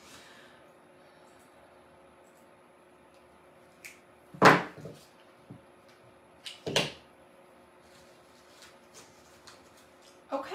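Wire cutters snipping artificial flower stems, with craft tools handled on a table. A handful of sharp snaps and clicks, the loudest about halfway through and two more close together shortly after, with quiet in between.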